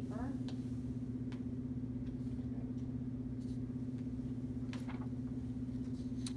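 A steady low hum, with a few faint ticks and rustles as sheets of construction paper are moved and a blank sheet is laid down.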